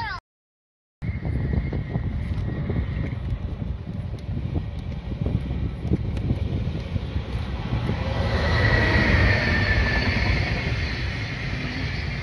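JR freight train approaching behind an electric locomotive, its running noise growing louder from about eight seconds in with a slightly falling whine as the locomotive passes. Wind buffets the microphone throughout. A brief dropout cuts the sound near the start.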